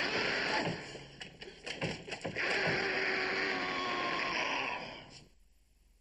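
Banging and crashing at a wooden door: several sharp knocks, then a longer, loud, clattering din that stops abruptly about five seconds in.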